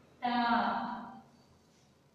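A woman's voice saying a single word aloud, clearly and drawn out, as in dictation.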